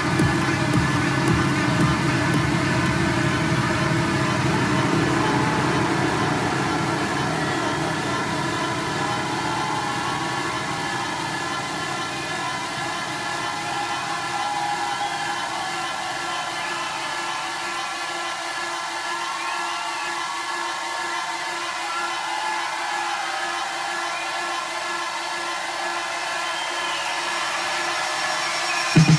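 Electronic techno breakdown played live from a DJ mixer. Sustained synth tones and a noisy hiss continue without the beat, while the bass fades away over the first half of the passage.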